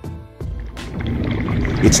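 Background music with a rushing whoosh that swells in about half a second in and builds steadily; a narrator's voice comes in right at the end.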